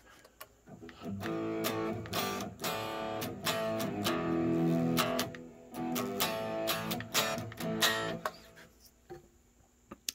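Electric guitar played through the Line 6 POD Go's Placater Dirty amp model, a driven tone: a series of chords, each struck and left ringing, starting about a second in and stopping shortly before the end.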